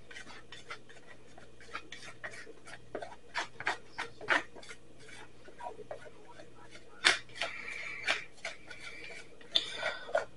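A metal utensil scraping and tapping against the inside of a clear plastic tub in irregular strokes, with the loudest scrapes from about seven seconds in.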